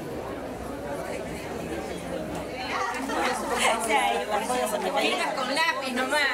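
Several women's voices talking over one another in a room, a low murmur at first that swells into lively chatter about halfway through.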